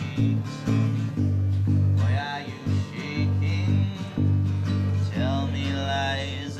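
Unplugged acoustic guitars, three played together, strumming chords in a steady rhythm, with the chord changing about every second.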